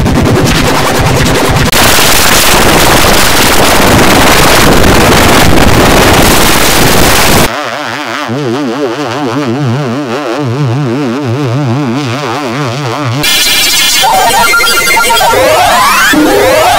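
Loud, harsh, digitally distorted audio-effect noise for about seven seconds. It drops to a quieter warbling, wobbling tone pattern with a fast vibrato for about six seconds, then loud distorted sound with rising sweeps comes back near the end.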